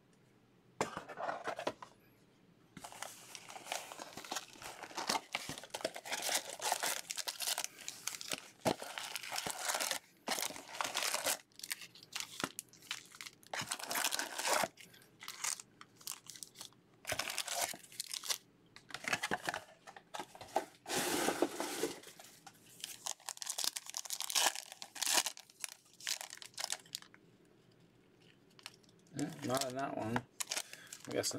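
Foil wrappers of Bowman baseball card packs being torn open and crinkled by hand: a long run of crackly tearing and crinkling sounds with short pauses between them.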